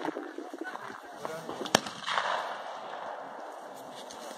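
A single gunshot, one sharp crack a little before the middle, with people talking in the background.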